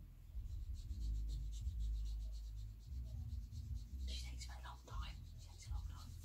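Marker pens being worked on a paper pad in quick repeated strokes, with dull knocks and low rumble from the table.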